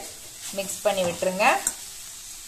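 Grated carrot sizzling faintly in a steel kadai while a perforated steel spatula stirs and mixes it, with a brief stretch of a person's voice in the middle.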